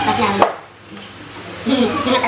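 A single sharp knock or crack about half a second in, over a steady low hum, with voices just before and after it.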